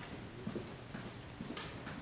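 Faint footsteps on a carpeted floor, a few soft steps about two a second, over quiet room tone.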